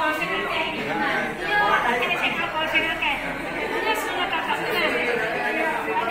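Voices talking over one another in a large room, with speech and chatter throughout.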